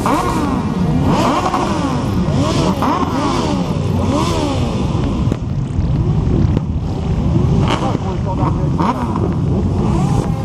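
A crowd of motorcycles idling together, with engines revved again and again, each rev rising and falling in pitch and overlapping the others.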